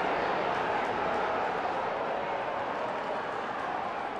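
Football stadium crowd, a steady murmur of many voices.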